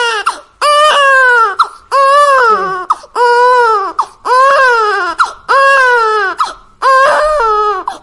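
A recorded infant crying, played back from a smartphone video: a steady run of loud wailing cries, each a little under a second long, about one a second, each falling in pitch at its end. The crying serves as the test sound that sets off the smart cradle's cry detector.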